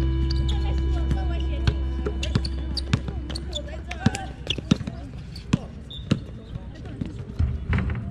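Basketball bouncing on a hard outdoor court as players dribble, a sharp knock every half second to a second. A steady low hum, loudest at the start, fades over the first few seconds.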